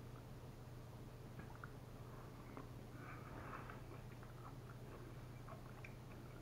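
Faint eating sounds, small mouth clicks and chewing, over a low steady hum.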